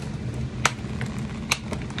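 Two sharp plastic clicks about a second apart as a small doll accessory, a toy hat, is worked loose from tight plastic packaging, over a steady low hum.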